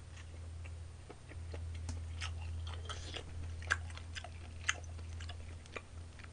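A person chewing and eating close to the microphone, with scattered small mouth and utensil clicks, over a steady low hum.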